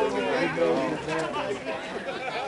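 People talking; indistinct chatter of voices close by.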